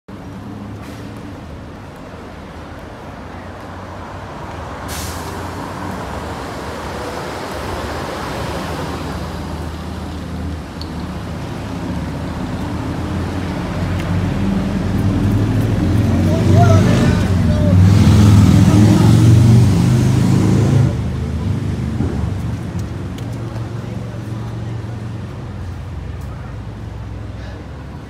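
City street traffic noise with a low rumble that builds to a heavy vehicle passing close by a little past the middle, then fades. Indistinct voices of people nearby mix in.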